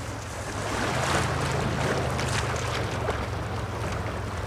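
Choppy river water washing and splashing around a paddled canoe, with a steady low rumble of wind on the microphone.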